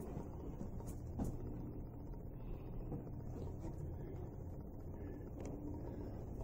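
Quiet room tone: a low steady hum with a few faint clicks, about one second in and again near the end.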